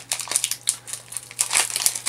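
Foil booster-pack wrapper crinkling in irregular sharp crackles as hands pull it open.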